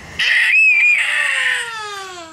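Baby squealing in play: one long high squeal that starts a moment in and slides slowly down in pitch.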